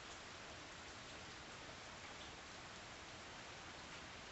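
Steady rain falling, heard as a faint, even hiss.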